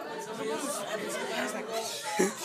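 Background chatter: many voices talking at once in a large room.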